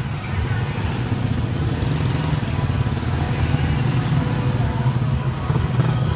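Steady low rumble of motor traffic, with motorcycle tricycle engines running close by and faint music in the background.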